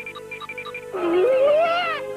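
Cartoon soundtrack: short repeated music notes over a held tone, then, about a second in, a loud drawn-out wavering cry that rises in pitch.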